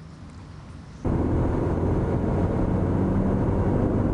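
Steady rumble of a car driving along a road, engine, tyre and wind noise together, cutting in suddenly about a second in after a quiet start.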